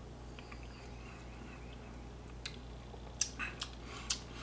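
Low steady room hum, then a few small clicks and mouth sounds in the last second and a half as a shot of tequila is sipped and tasted.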